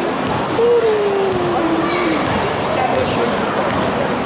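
A basketball being dribbled on a hardwood gym floor, with sneakers giving several short, high squeaks, in a large echoing gym. About a second in, a drawn-out tone slides down in pitch.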